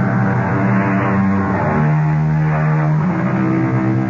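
Radio drama act-break music: loud held chords that shift about two seconds in and again near three seconds.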